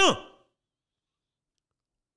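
A man's spoken word trailing off in the first half-second, then dead silence: a pause in his speech.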